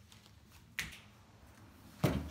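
A single finger snap a little under a second in, over quiet room tone.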